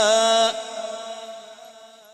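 A male qari's voice reciting the Quran in melodic style through a PA system with heavy echo: a long held, ornamented note cuts off about half a second in, and its echo fades away over the rest.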